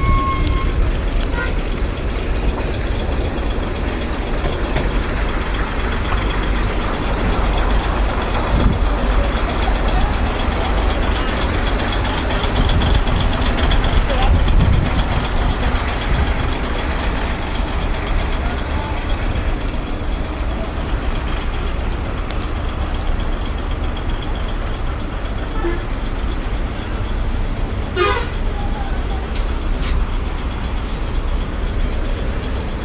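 Steady, loud, deep rumbling noise of heavy trucks in a truck yard, with a brief sharp sound near the end.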